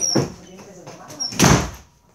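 Two loud thumps close to the microphone, the second and louder about a second and a half in, with a child's voice faintly between them.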